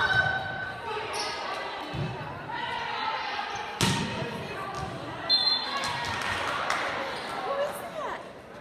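Volleyball being struck during a rally in a gymnasium, several hits with one sharp loud hit about four seconds in, over a continuous hubbub of spectators' voices echoing in the hall.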